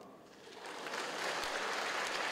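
Audience applause, building about half a second in and then going on steadily.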